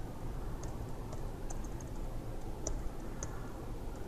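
Typing on a computer keyboard: a scattered run of light key clicks over a steady low background hum.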